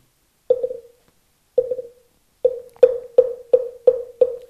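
A moktak (Buddhist wooden fish) struck with its mallet: hollow, pitched wooden knocks, three slow ones and then a quickening run of strokes. This is the customary roll that leads into the chanting of the mantra.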